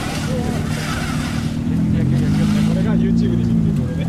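Car engine running with a low rumble, its revs rising a little before the middle and holding for about two seconds before dropping back near the end.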